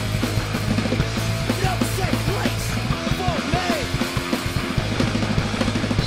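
Loud punk or heavy rock band recording: electric guitar over a busy drum kit, the low end thinning out for a moment near the middle.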